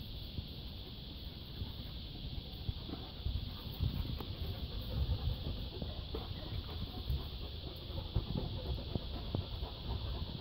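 A steady high-pitched hiss over irregular low thumps and a few faint clicks, as a handheld camera and footsteps move across a tiled patio; the thumps are loudest a few seconds in.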